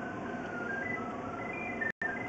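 A run of short electronic tones stepping up and down in pitch like a simple tune, over a steady hiss. The sound cuts out completely for a moment just before the end.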